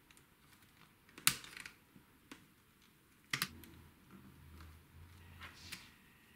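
Handling clicks and knocks on the plastic and metal tape mechanism of a Digital Compact Cassette recorder as it is worked on with a screwdriver: scattered light clicks, with two sharper, louder clicks about a second in and about three seconds in.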